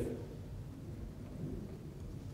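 Pause in speech: faint, steady low rumble of lecture-hall room tone.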